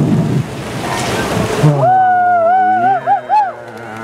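A rushing noise, then a long held vocal note that wobbles up and down a few times near the end before breaking off.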